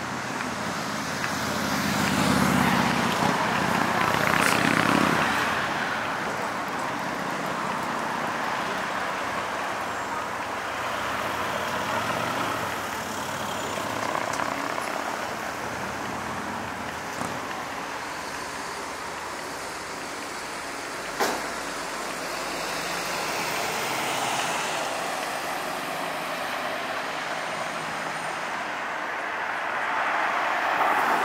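City street traffic at an intersection: a steady hum of passing cars, with one vehicle passing loudly a couple of seconds in. A single sharp click comes about two-thirds of the way through, and traffic swells again near the end as cars approach.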